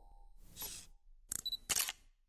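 Logo-sting sound effects: a soft whoosh about half a second in, then two short camera-shutter clicks near the end.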